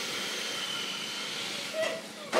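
Small electric motor of a toy RC car whining as the car drives fast across a smooth hard floor, with a steady hiss and a faint thin high tone in the middle.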